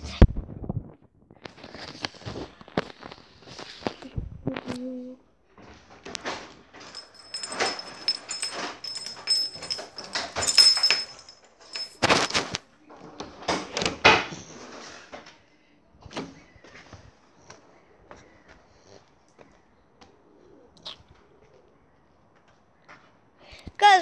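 Knocks, thuds and rustling as a handheld camera is carried and handled, with the bangs of a door being opened, the loudest a sharp knock about halfway. It goes much quieter for the last several seconds.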